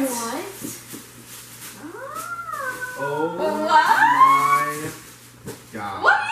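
A dog whining in long, high calls that rise and fall in pitch, one running into the next.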